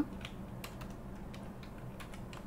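Computer keyboard being typed on: a few light, irregular keystrokes.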